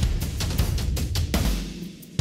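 Drum loop playing back through a multiband compressor whose mid band is set to downward expansion, so the quiet mid-range parts are pushed down further and the drums sound mid-scooped. The hits come several times a second over a steady low end.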